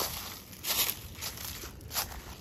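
Footsteps crunching through dry fallen leaves on a forest floor, with a loud crunch a little over half a second in and another near the end.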